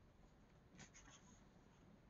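Near silence, with a faint, brief rustle of a paper book page being handled a little under a second in.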